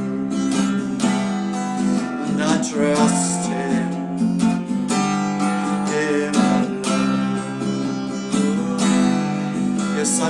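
Acoustic guitar strummed in a steady rhythm over held keyboard chords in an instrumental passage of a slow worship song.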